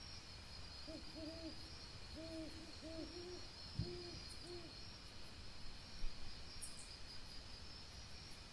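A run of about eight short, low hooting calls, close together over a few seconds, over a steady high chirring of night insects. A soft knock sounds about four seconds in and another about six seconds in.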